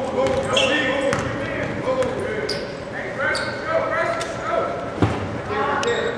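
Basketball game sound in a gym: overlapping crowd and player voices, a basketball bouncing, short high squeaks, and a single sharp thump about five seconds in.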